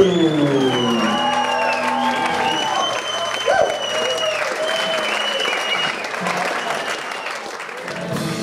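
A rock band's closing note cuts off with a falling pitch slide in the first second, then the audience applauds, cheering and giving long, high whistles.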